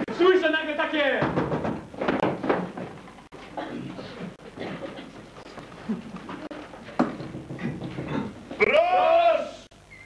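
Actors making wordless, bleat-like vocal calls: one at the start, quieter voices in the middle, and a loud call that rises and falls in pitch near the end.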